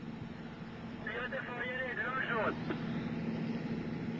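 Steady low hum with faint voices in the distance from about a second in to past the middle. No rocket ignition is heard: the launch has failed to go after the fire command.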